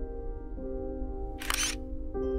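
Soft ambient music with sustained tones. About one and a half seconds in, a single brief camera shutter sound marks the first exposure of the time-lapse sequence.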